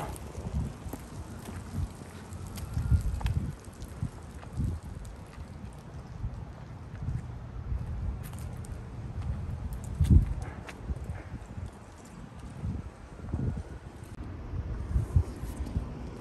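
Footsteps on pavement and handling of a handheld phone as someone walks, heard as irregular low thumps, the loudest about ten seconds in, over light wind on the microphone.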